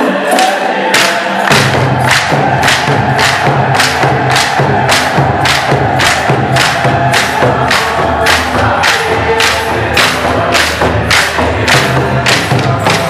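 Eritrean Orthodox mezmur (spiritual song): group singing over a steady percussion beat of about two and a half sharp strokes a second. A deep low beat joins about a second and a half in.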